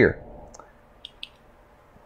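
A few faint, short clicks advancing a presentation slide on a computer, the clearest pair close together about a second in.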